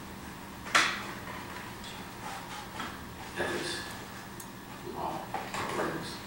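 A sharp knock about a second in, the loudest sound, then scattered small clatters and clicks of objects being handled and set down in a meeting room.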